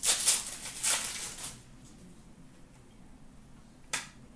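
A hockey card pack's wrapper being torn open and crinkled by hand, in several rustling bursts over the first second and a half. Then a quiet stretch, with one short click near the end.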